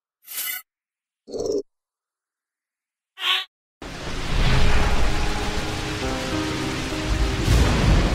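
Logo-sting sound design: three short whooshes in the first three and a half seconds, then a loud, deep rumble of thunder and rain that sets in just before halfway, with a held musical chord under it.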